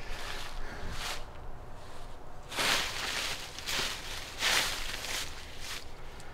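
Footsteps through dry fallen leaves and brush: a few irregular rustling steps, roughly a second apart.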